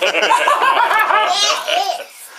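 Hearty laughter, an older man's loud laugh among it, in quick repeated peals that stop about two seconds in.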